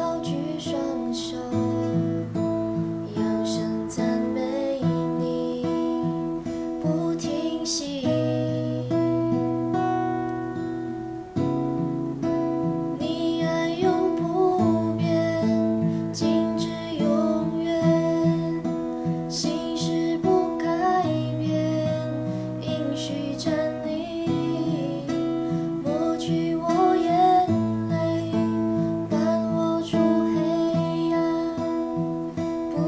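Acoustic guitar with a capo, playing a slow chord progression of a gospel worship song. The chords change every couple of seconds, with a bright strum on each change.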